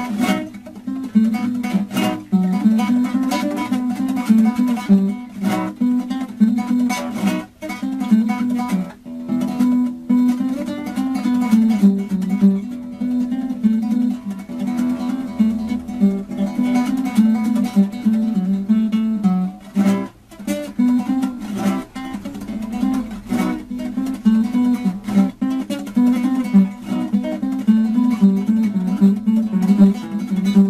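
Solo acoustic guitar played by hand, a plucked melody over chords broken up by sharp strummed strokes, running without a break.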